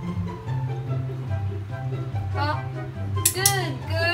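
Light background music with a steady bass line. Near the end, a few short pitched sounds that rise and then fall in pitch cut across it.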